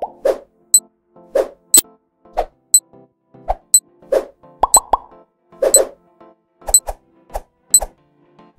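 Countdown-timer music made of short popping notes in an uneven rhythm, with a high tick once a second marking the seconds.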